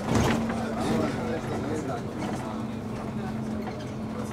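City bus running with a steady hum, heard from on board, with a knock right at the start.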